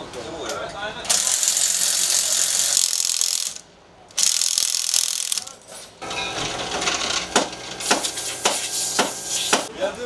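Pneumatic wheel guns rattling in two long bursts on a rally car's wheel nuts during a wheel change, followed by a run of sharp metallic clanks and knocks from the tools and jacks.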